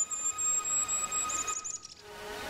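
Very high, thin birdsong: a long wavering note, then a quick run of short falling notes near the end, laid over steady ambient synth drone tones.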